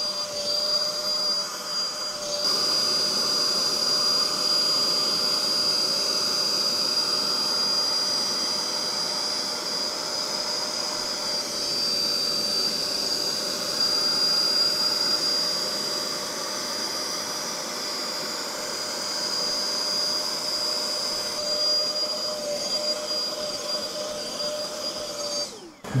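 Bissell SpotClean Pro carpet extractor running steadily, its suction motor giving a high, even whine over a steady rushing noise as the hand tool extracts a car floor mat.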